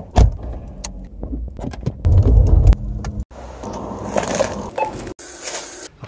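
A car door is opened by its handle with a knock, followed by a loud low rumble of the car starting up. The sequence is chopped into short clips that cut off suddenly.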